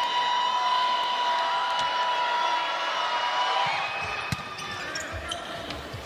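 Arena crowd noise from a volleyball match, with a steady held tone for about the first three and a half seconds. Later come a few sharp hits of the volleyball as the serve is struck and the rally begins.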